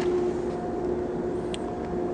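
Steady machine hum at a constant low pitch over background noise, with one faint click about one and a half seconds in.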